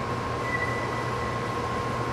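A steady mechanical hum with a constant high whistling tone over an even hiss, unchanging throughout, like ventilation machinery running in a large hall.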